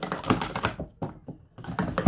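Clear plastic sport-stacking cups clacking rapidly against each other and the mat as they are stacked and unstacked at speed, with a brief lull about a second in before the clatter resumes.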